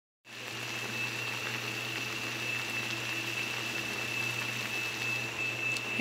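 A pot of fish and greens cooking in coconut milk (ginataang lapu-lapu), boiling with a steady bubbling hiss. A steady high-pitched whine and a low hum run underneath.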